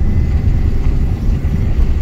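Car driving over a badly broken-up village road, a steady low rumble of engine and tyres.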